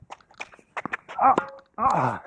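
Quick footsteps and shoe scuffs on a hard tennis court as a player recovers after a shot, with short effort grunts about a second in and again near the end.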